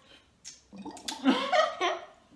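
A child blowing bubbles through a drinking straw into a glass of soda, a burst of bubbling that starts about three quarters of a second in and lasts about a second.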